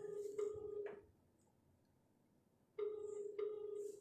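Telephone ringback tone through a phone's loudspeaker: a steady low beep in double pulses, two rings about three seconds apart, as an outgoing call rings at the other end.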